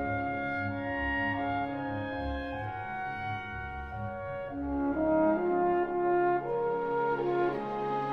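Orchestral classical music of long held chords over a pulsing low accompaniment. The low pulsing drops out about five seconds in, and the music grows louder as higher notes rise.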